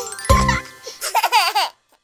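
The last beat of a children's song with a bass line dies away, then cartoon babies giggle in the second half, the laughter bending up and down in pitch before cutting off just before the end.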